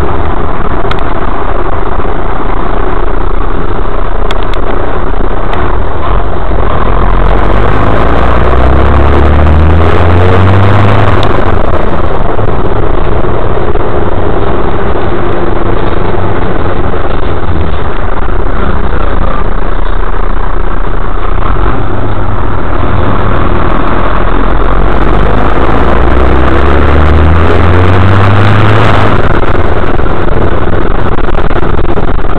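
City bus engine heard from inside the passenger cabin, loud throughout, rising in pitch twice as the bus accelerates, each rise breaking off suddenly, about a third of the way in and again near the end.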